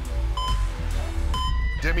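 Electronic start-countdown beeps, a short high beep once a second, twice, over music with a steady deep bass. A voice begins at the very end.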